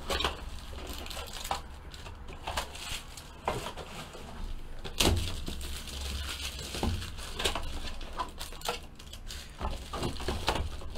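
Plastic wrapping crinkling and a cardboard trading-card box being handled and opened, with scattered taps and clicks; the loudest knock comes about five seconds in.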